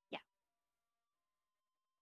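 One short spoken syllable, the end of a "thank you", then near silence.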